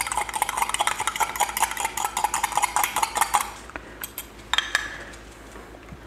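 A spoon stirring taco seasoning into water in a glass measuring cup, a quick run of clinks against the glass that stops about three and a half seconds in.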